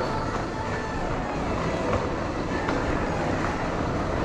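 Steady rumbling background noise of a busy indoor shop, with an even hiss and no distinct events.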